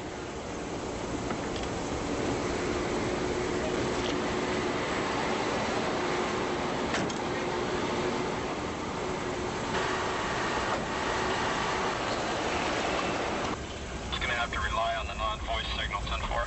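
Steady vehicle and street-traffic noise around a limousine, with a faint steady engine tone running under it. Indistinct voices come in near the end.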